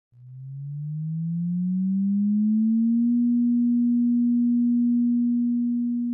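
An electronic intro tone: a single low, pure sine-like tone glides up about an octave over roughly three seconds, then holds steady and begins to fade near the end.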